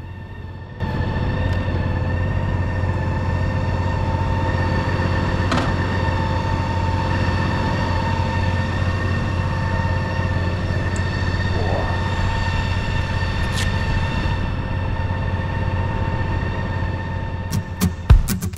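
A vehicle engine idling steadily, a constant low hum with a whine over it, starting suddenly about a second in.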